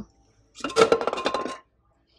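A stack of dark speckled cups clattering and clinking against each other as one is pulled from the stack, starting about half a second in and lasting about a second, with a short ring.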